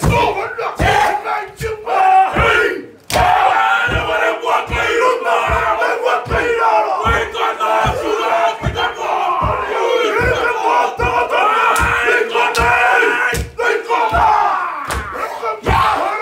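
A group of men performing a Māori haka: loud chanted shouts in unison over a steady beat of thumps from stamping and body slaps, about two a second.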